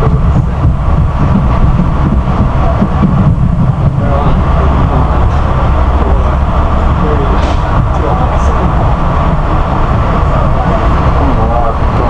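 Inside a Metro-North Hudson Line passenger car as the train pulls out of a station: a loud, steady low rumble from the moving car, with a faint steady hum above it and faint voices in the background.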